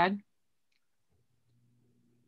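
A woman's voice ends a spoken word just after the start, then near silence on the call, with a very faint low hum in the second half.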